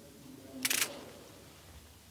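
Smartphone camera shutter sound: one short, sharp click about two-thirds of a second in as a photo is taken.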